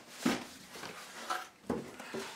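A cardboard file box set down with a thump about a quarter second in, then lighter knocks and a second thud near the end as its lid is opened.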